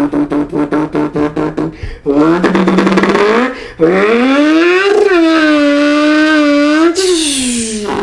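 A man imitating a turbocharged two-rotor Mazda RX-3 drag car with his mouth. It starts as a fast, choppy rotary idle, then the pitch climbs in two revs and holds on a high note. A hiss comes in near the end and the pitch falls away.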